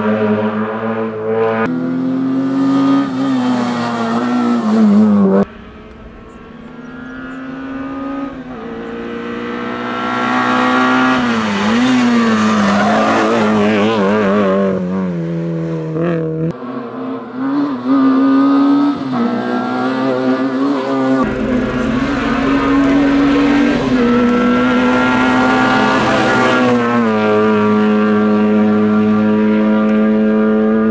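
Peugeot 106 rally car engine revving hard through a run of tight corners, its pitch climbing and dropping with each gear change and lift. Partway through, the car is faint and grows steadily louder as it approaches.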